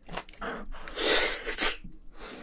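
A man's sharp, forceful burst of breath through the mouth about a second in, after a softer intake of breath, followed by a shorter puff: an eater blowing out hard between bites of spicy seafood.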